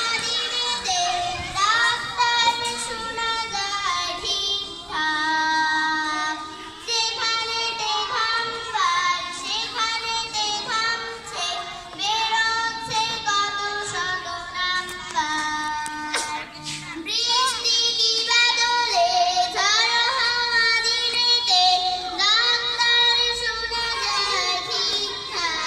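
Children singing a song, accompanied by a harmonium.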